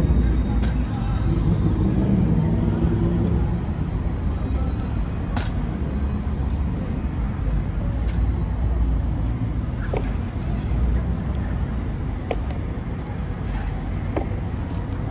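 Heavy ceremonial clogs (tsarouchia) of Evzones guards striking the stone paving in single sharp clacks, about seven, spaced irregularly one to a few seconds apart, over a steady low rumble of traffic.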